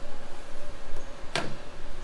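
Handling noise of a crankshaft fitted with bob weights being moved and positioned in a balancing machine: an uneven low rumble, with one short sharp knock about a second and a half in.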